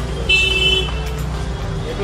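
Steady low rumble of road traffic with a short, high-pitched horn toot about a third of a second in.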